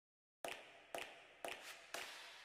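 Dead silence for the first half-second, then four sharp ticks about half a second apart, each dying away quickly: a ticking sound effect.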